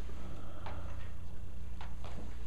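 Chalk on a blackboard: two short, sharp tapping strokes about a second apart as a structure is drawn, over a steady low room hum.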